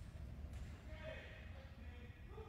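A faint, distant voice about half a second in, over a steady low rumble of open-air ambience.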